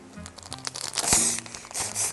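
A small snack wrapper being torn open and crinkled by hand, loudest about a second in, over steady background music.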